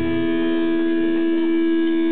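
Amplified electric guitars holding a loud, steady droning note in a live rock performance, one unchanging tone with overtones and no beat.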